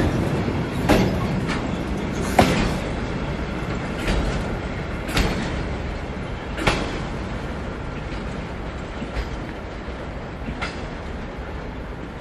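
Enclosed car-carrying railway wagons rolling past, their wheels clacking sharply over rail joints about every second or so over a steady rolling rumble. The clacks thin out and the whole sound slowly fades as the tail of the train draws away.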